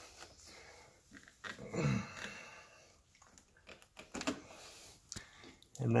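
Quiet handling of motorcycle wiring: a few small clicks and rustles as plug connectors on the power leads are worked by hand, with a short 'uhh' from a man's voice, falling in pitch, about two seconds in.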